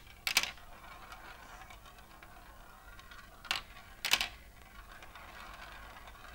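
A glass marble rolling along the plastic track of a Galt Super Marble Run, a faint rolling rattle broken by three sharp plastic clicks: one near the start, then two about three and a half and four seconds in. It ends circling in the run's plastic funnel bowl.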